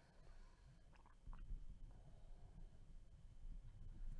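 Near silence: low room hum with a couple of faint clicks about a second in.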